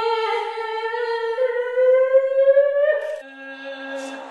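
A voice holding one long, high wordless note that slowly rises in pitch, breaking off about three seconds in; a lower, steady held note then takes over.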